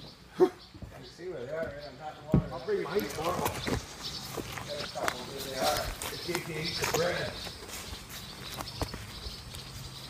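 Quiet, indistinct voices of people talking, with a sharp knock about half a second in and another about two and a half seconds in.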